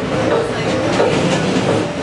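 Subway car in motion: steady loud rail noise with occasional knocks, and short electronic keytar notes sounding over it.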